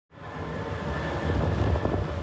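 Wind buffeting the microphone over surf on the shore: a steady, rumbling rush that fades in at the start.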